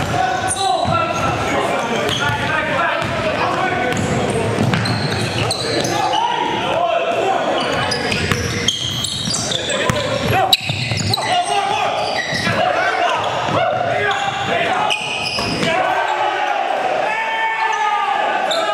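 Live basketball game in a gym: a basketball dribbling and bouncing on the hardwood floor amid players' shouting voices, echoing in the large hall.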